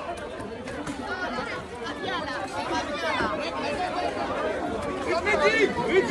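Crowd of people talking and shouting over one another, with louder, higher-pitched shouts near the end.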